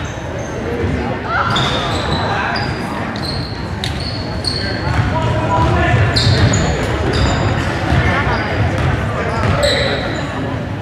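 Basketball game sound in a gymnasium: a ball bouncing on the hardwood floor, sneakers squeaking in many short high chirps, and players and spectators calling out, all echoing in the large hall.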